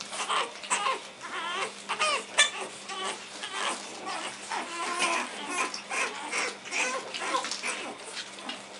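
Pug puppies squealing and yelping in many short, high cries as they play-fight.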